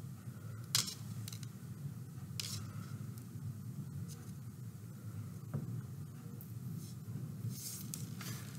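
Faint handling sounds of hands working thread and small beads on a dream catcher: a few light, separate clicks, with a small cluster near the end, over a steady low hum.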